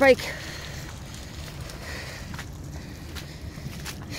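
Steady outdoor background noise in an open field, a low rumble with hiss, and a couple of faint soft taps.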